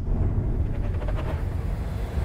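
A steady deep rumble with little above it, a low sustained drone of the kind laid under a film trailer.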